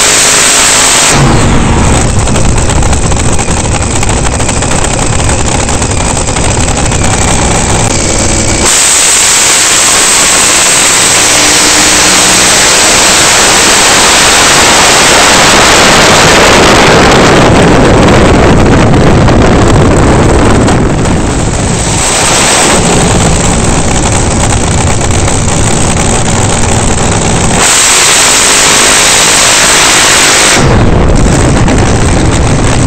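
Supercharged nitromethane-burning Top Fuel dragster V8 running at full throttle, recorded on board just behind the blower and heavily overdriven. The sound shifts abruptly several times, about 1, 9, 17, 23 and 28 seconds in, as the footage cuts between burnouts and runs.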